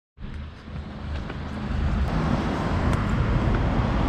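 Road traffic noise from passing cars, with a deep uneven low rumble underneath, starting suddenly and building in level over the first two seconds.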